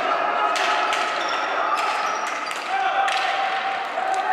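Ball hockey being played on a concrete arena floor: repeated sharp clacks of sticks striking the ball and the floor, with players' voices calling out over them.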